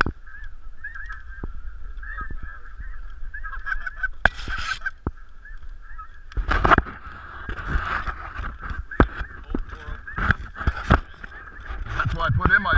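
Snow geese calling: a dense chorus of many overlapping high yelps that goes on throughout, with a few knocks and bumps from handling close to the microphone.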